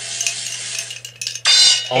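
Roulette-wheel app on a smartphone spinning with a rapid clicking that thins out, then a short bright ringing sound about one and a half seconds in as the wheel stops on its result.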